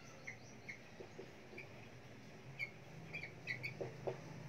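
Marker squeaking faintly on a whiteboard as words are written: short, high squeaks, a few spread apart at first, then a quicker cluster over the last second or so.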